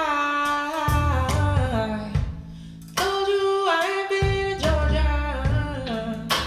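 A song playing through TAD R1 mk2 loudspeakers driven by an Accuphase E-800 Class A integrated amplifier: a singer's voice sliding between held notes over guitar and bass. The music eases off about two seconds in and the full band comes back about a second later.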